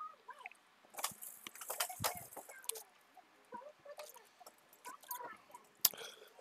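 Faint, squeaky babbling syllables from a video game's dialogue box, chirping up and down in pitch, with a few scattered light clicks.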